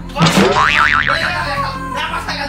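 Cartoon comedy sound effect: a sudden upward sweep, then a wobbling boing that settles into a held tone, laid over background music.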